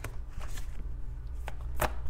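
A deck of tarot cards handled by hand, with a few sharp card snaps: one at the start and two near the end, over a low steady hum.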